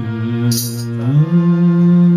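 Harmonium playing sustained notes that move up in pitch about a second in. There is a short bright percussive hit about half a second in.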